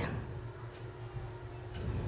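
Soft handling of nylon spandex lining fabric on a table, over a low steady hum, with faint ticks about once a second.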